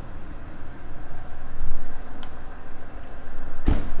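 Land Rover Freelander 2's 2.2-litre diesel engine idling with a steady low rumble, then a car door shutting with a single thump near the end.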